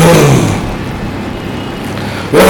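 A man's chanting voice draws out a last syllable that falls in pitch over the first half-second, then fades into steady, noisy hall ambience.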